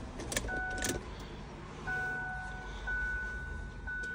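An ignition key turned in a Ford Edge's ignition switch, with a few sharp clicks, as the engine is shut off and the key brought back to the on position. After that, steady electronic warning beeps sound about once a second.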